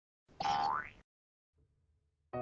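A short cartoon-style editing sound effect: a single pitched tone that slides upward over about half a second, starting a little way in, then silence.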